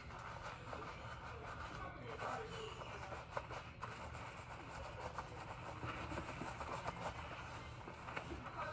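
Faint rubbing and squishing of fingers massaging shampoo lather into hair and scalp, with scattered small crackles.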